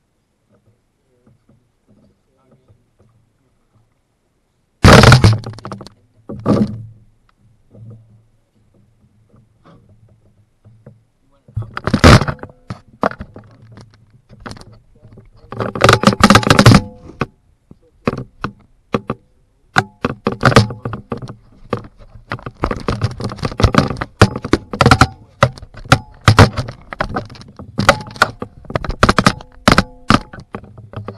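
Knocks and thuds on a canoe hull picked up by a camera clamped to it: a few heavy, separate thuds about five, twelve and sixteen seconds in, then a dense, irregular run of clicks and knocks in the last third.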